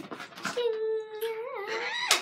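A child's voice holding one long sung or hummed note, steady in pitch until a wobble near the end.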